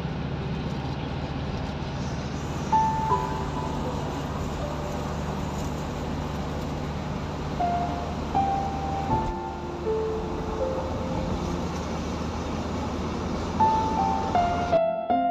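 Steady low hum of a car's engine and road noise heard from inside the moving vehicle, with a slow, sparse melody of held notes playing over it.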